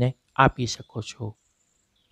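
A man narrating in Gujarati for just over a second, then a pause in which only a faint, thin high-pitched tone is heard.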